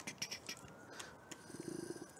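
Faint scattered clicks of a laptop being operated, with a short low hum near the end.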